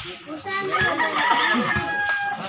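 A rooster crowing, one long call of about two seconds that ends on a held note, mixed with shouting voices.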